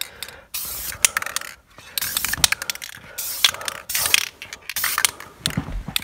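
Aerosol spray paint can hissing in several short bursts, with clicking between them.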